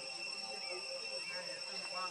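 Outdoor background sound: a steady high-pitched drone with faint voices and a few short chirps.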